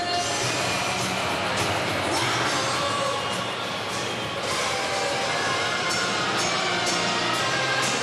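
Music playing over the public address of an ice hockey arena, mixed with the steady din of the crowd, with a few sharp knocks.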